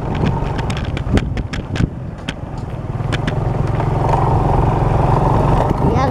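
A vehicle engine running while under way, with sharp knocks and rattles, mostly in the first half; the engine hum grows louder from about three seconds in.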